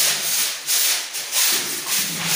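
A hand broom brushing against a painted concrete wall: several quick, scratchy sweeping strokes, one after another.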